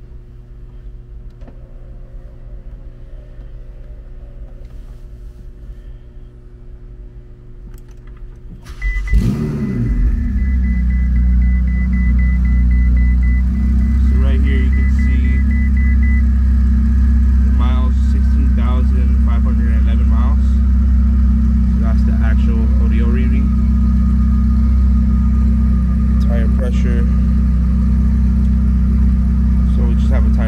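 Ferrari 488 GTB's 3.9-litre twin-turbo V8 is started about nine seconds in, after a quieter stretch of low hum: the revs flare briefly as it catches, then settle into a loud, steady idle. A rapid high beeping runs for several seconds after start-up.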